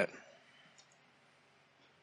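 A man's voice trails off at the very start, then near silence in a quiet room, broken by a few faint clicks about two thirds of a second in.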